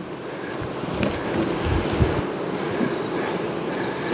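Wind rushing on the microphone, a steady noise with a few low gusts between about one and two seconds in.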